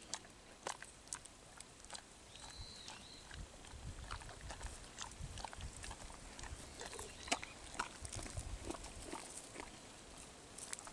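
Golden retrievers sniffing and snuffling at leaf litter, with small clicks and crunches as they nose at and chew something picked up from the ground. A faint high whistle sounds briefly a little over two seconds in.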